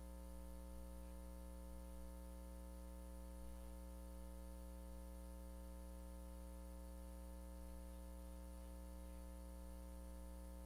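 Faint steady electrical hum with a light hiss, unchanging throughout: the idle background of the room's microphone feed.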